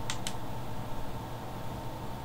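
Two quick clicks of a flashlight's switch near the start as the light comes on, then a steady low room hum.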